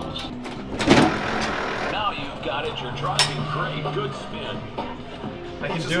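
Sounds of an arcade prize-wheel game machine: faint electronic game music with voices in the background, a sharp knock about a second in, and a short, low steady tone a little after three seconds.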